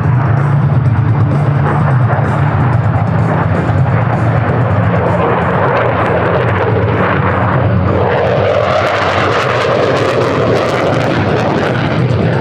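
Jet noise from a JAS 39C Gripen's single Volvo RM12 engine during a flying display, swelling noticeably from about eight seconds in, heard together with music.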